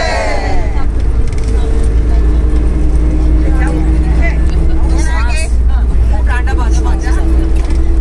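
Steady low rumble of a road vehicle running, with people's voices speaking on and off over it.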